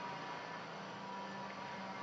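Faint steady hiss with a low hum and a faint steady tone: the room tone of the classroom recording, with no distinct sound.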